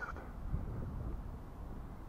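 Low, uneven rumble of wind on the microphone, with no distinct sound above it.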